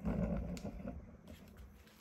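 A man's short, low vocal sound, like a breathy laugh or grunt, at the start, fading within about a second, followed by faint clicks and rustles of movement.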